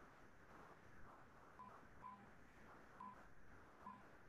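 Near silence with four faint, short electronic beeps, unevenly spaced, starting about a second and a half in.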